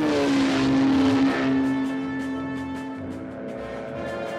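Autogyro engine buzzing as it takes off and passes close by, with a rush of noise for the first second or so and its note dropping slightly as it goes, over orchestral film score.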